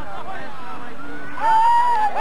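Several people shouting and calling out at once during a softball play, with one loud drawn-out yell about one and a half seconds in.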